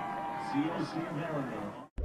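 Broadcast football commentary: quiet speech over steady game background noise, cut off abruptly to silence near the end.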